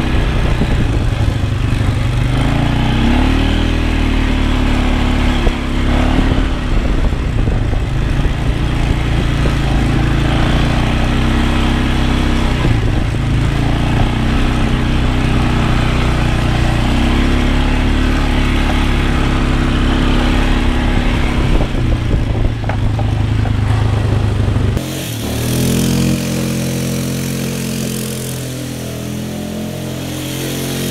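Polaris ATV engine running close to the microphone on the handlebars, its pitch rising and falling as the rider throttles up and eases off. About 25 s in the sound cuts to an ATV heard from further off, quieter, its engine note climbing as it drives toward the microphone.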